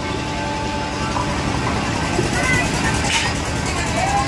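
Steady low rumble of fairground ride machinery running, with voices from the crowd and riders over it and a brief hiss about three seconds in.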